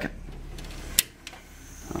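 Low room tone with a single sharp click about a second in, after which the background drops quieter.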